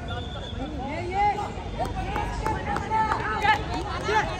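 Players and spectators shouting and calling over one another during a kho-kho match, with loud shouts about one second and three and a half seconds in, over a steady low rumble.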